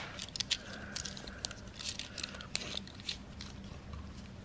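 Scattered light clicks and crackles of a stack of 2-euro coins being handled in gloved hands just after the roll is opened.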